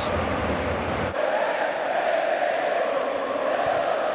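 Stadium crowd noise: a large football crowd chanting and cheering in a steady roar. The low rumble underneath drops away about a second in.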